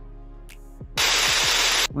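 Quiet music with short falling notes, then about a second in a sudden loud burst of white-noise static that stops abruptly after nearly a second.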